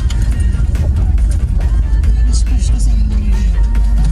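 Music playing over the steady low rumble of a car driving slowly, heard from inside the car.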